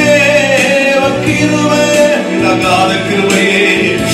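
A man singing a Christian worship song into a microphone, over sustained instrumental accompaniment.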